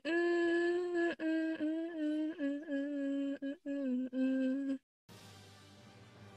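A woman humming a short tune with closed lips, a string of held notes that step downward in pitch, stopping just under five seconds in. Faint music starts near the end.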